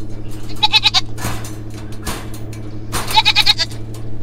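Young goat bleating twice, each call about half a second long with a wavering pitch, as it is shut in a kennel for the first time. A steady low hum runs underneath.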